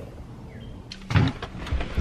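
Someone climbing into the driver's seat of a Chevy Silverado pickup: clothing rustling, then a few soft knocks and low thumps about a second in as he settles into the cab.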